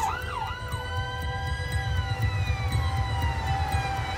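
NHS ambulance siren: fast up-and-down yelping that changes within the first second to a slow wail, rising and then falling over about two seconds and starting to rise again near the end, over the low rumble of the moving vehicle.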